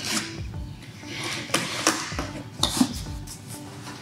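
A box cutter slitting packing tape on a cardboard box: a few sharp scratchy strokes, then the cardboard flaps pulled open toward the end.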